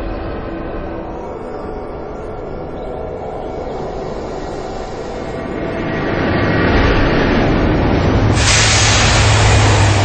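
Train running on the line, a steady rumble that grows louder past the halfway point. A sudden loud hissing rush comes in near the end.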